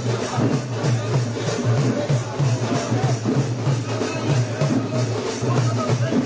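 Music with a steady, quick drum beat.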